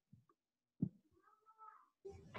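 Near silence broken by a single short click about a second in, then a faint, short pitched call near the end.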